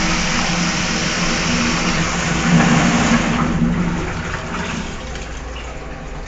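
Cistern flush of a Twyfords square squatting pan: water rushing through the pan, strongest about two and a half seconds in, then dying down to a quieter run of water over the last couple of seconds.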